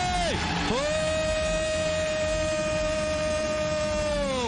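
Arabic football commentator's long, high-pitched held shout of "goal" as the ball goes in. The shout dips and breaks briefly just after the start, then is held steady for about three seconds.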